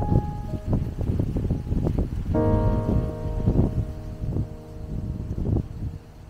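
Background music of sustained piano-like keyboard notes changing pitch a few times, over irregular low rumbling gusts of wind noise on the microphone.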